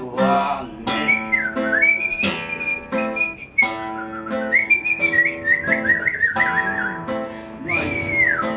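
A whistled melody over acoustic guitar: long high whistled notes that hold, dip, and waver near the middle, with the guitar playing steady chords underneath.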